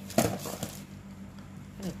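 A sharp tap a fraction of a second in, followed by a brief rustle, as a small cardboard snack box is handled over a plastic parcel bag.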